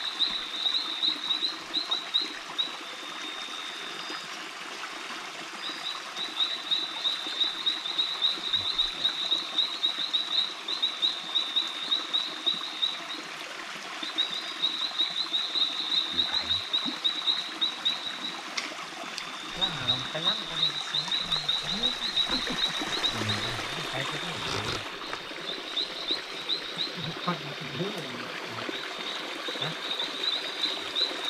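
A frog calling in a rapid high-pitched trill, repeated in runs of a few seconds with short breaks between them.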